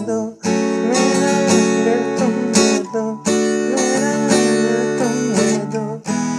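Acoustic guitar strummed steadily in a down-stroke pattern through the song's open chords (A, F#m, D, E), played at normal speed, with short breaks about half a second in and around three seconds in. A man's voice sings the melody along with it.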